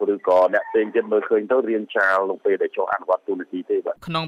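Speech only: one voice talking steadily, as in a news report, with no other sound standing out.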